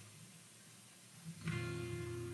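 An acoustic guitar note plucked quietly about one and a half seconds in, left ringing, after a near-silent pause.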